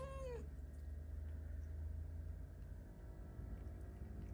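A cat meowing once, a short call that rises and then falls in pitch, right at the start, over a steady low hum.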